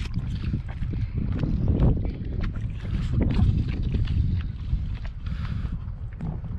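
Water lapping and sloshing around a stand-up paddleboard on a lake, with wind rumbling on the microphone and small splashes swelling about two and three seconds in.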